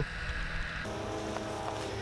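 A steady hum with evenly spaced overtones comes in about a second in and fades out about a second later, over faint background noise.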